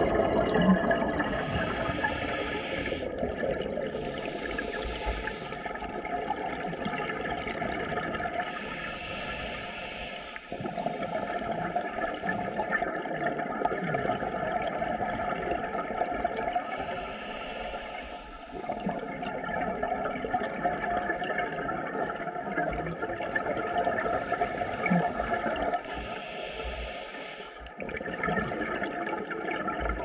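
Scuba regulator breathing heard underwater: a churning, bubbling exhalation noise, broken at irregular intervals by short hissing inhalations.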